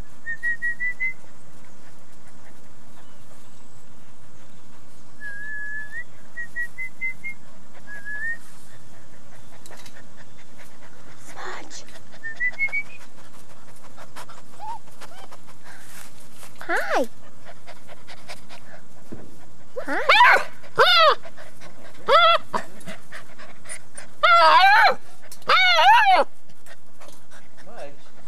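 Puppies whining and yelping: short, high, wavering cries that come thicker and louder in the last third. Faint high chirping whimpers are heard earlier.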